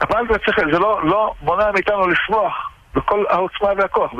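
Only speech: a person talking in Hebrew in quick phrases, with the sound cut off above the range of a telephone line, so it sounds narrow and phone-like.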